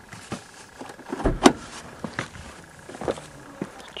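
Handling noises of someone moving about and getting out of a car: rustling and scattered clicks, with one loud knock about a second and a half in.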